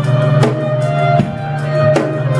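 Live instrumental music from a violin, an upright bass and a drum kit: the bass holds low notes under a bowed violin line while the drums keep a steady beat on cymbals.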